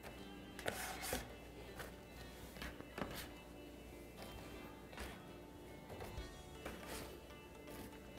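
Faint background music with scattered soft taps and clicks of a metal spatula as baked scones are lifted and set down.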